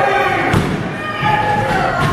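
A referee's hand slapping the wrestling ring canvas during a pin count, with one clear thud about half a second in, over a crowd shouting.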